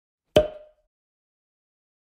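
A single short, sharp pop with a brief ringing tone, from a sound effect edited into the soundtrack.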